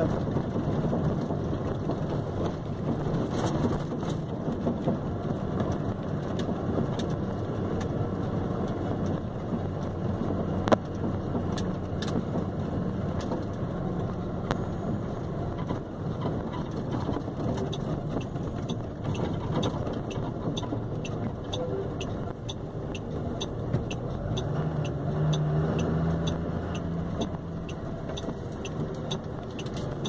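Steady engine and road noise heard inside a vehicle's cab while driving in traffic, with the engine note growing stronger in the last few seconds. Faint, evenly spaced ticking comes in over the second half.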